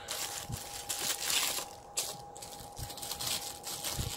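Clear plastic bag crinkling and rustling in irregular bursts as it is handled and unwrapped from a guitar effects pedal. A faint steady high tone runs underneath.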